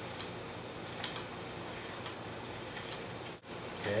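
A spinning wheel running as wool is drafted into yarn: a steady soft hiss with a few faint clicks about a second apart.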